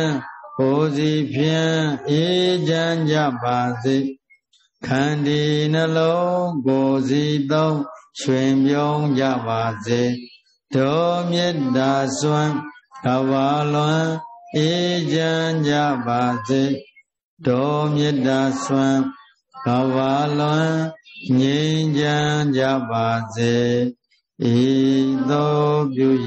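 Buddhist chanting: a voice reciting on a steady, even pitch in phrases of one to two seconds, with short pauses between them.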